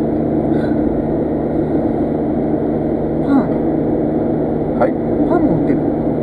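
Steady road and engine noise heard inside a car cabin while it drives at expressway speed.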